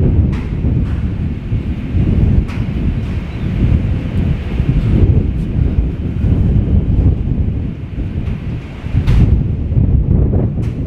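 Wind buffeting the microphone: a loud, gusting rumble that swells and eases, with a few brief clicks.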